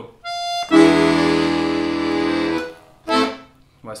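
Bugari Armando piano accordion: one short, steady right-hand note, then a full chord with bass held for about two seconds that fades out. The chord is the E seventh (dominant) chord of the A-minor tango, just named.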